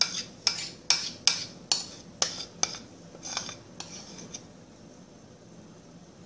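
A utensil knocking and scraping against a glass Pyrex dish while sticky mashed purple sweet potato dough is worked into it: about nine sharp knocks, a little over two a second, stopping about four and a half seconds in.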